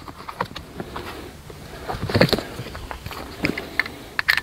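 Scattered light clicks and knocks from the Glide 'n Go XR lift seat being handled by its seat back and armrests, with louder knocks about two seconds in and again near the end.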